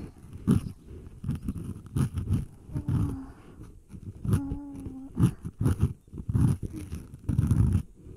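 Close-up ASMR rubbing and massage sounds on the ears of a binaural microphone: irregular soft thumps and rubs with occasional crisp clicks. Two brief hum-like tones come in around the middle.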